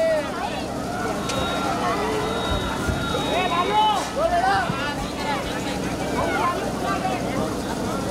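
Crowd chatter: many voices talking at once, with no single speaker standing out, over a steady low hum. A faint, steady high tone sounds for about three seconds, starting about a second in.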